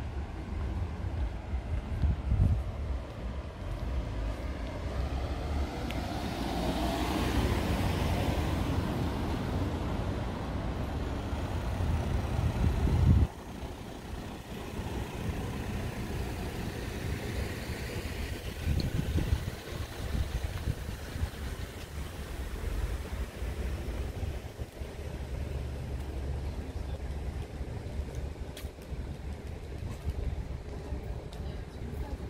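Street traffic: a vehicle's sound swells over several seconds and then stops abruptly about thirteen seconds in, leaving a quieter steady low rumble of the street.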